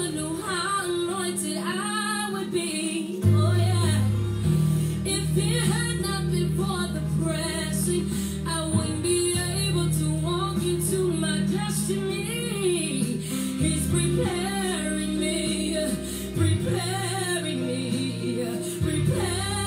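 A gospel song: a woman singing over instrumental backing with sustained bass notes that change every few seconds.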